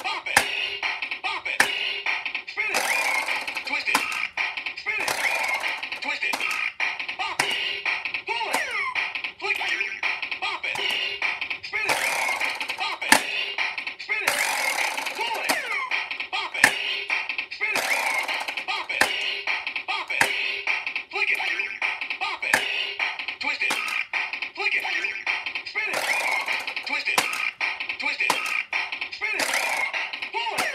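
Bop It Extreme handheld game playing its electronic beat loop with spoken commands, while its bop button, twist handle, pull handle and other controls are hit and worked in quick succession, each move giving a sharp plastic click about every second or less.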